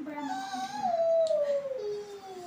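A long, drawn-out pitched call that slides slowly down in pitch over about two seconds, loudest in the middle, like a howl.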